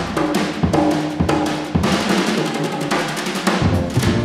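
Live jazz trio in an instrumental passage led by the drum kit, with busy snare and cymbal strokes. The low upright-bass notes drop out and come back in about three and a half seconds in.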